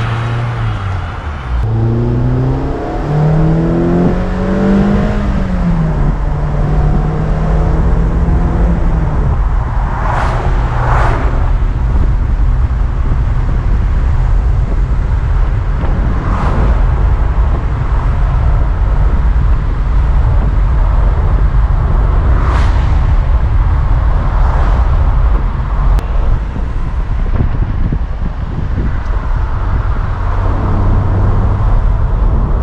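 Mazda MX-5 Miata's four-cylinder engine heard from the open cockpit with the top down: a couple of seconds in it revs up under acceleration, drops in pitch at a gearshift, then settles to a steady cruise under loud wind and road noise. Oncoming cars rush past a few times.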